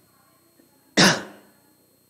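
A man coughing once, sharply, about a second in.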